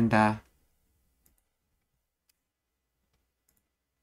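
A man's voice stops about half a second in; after that, three faint, sharp computer mouse clicks spaced about a second apart.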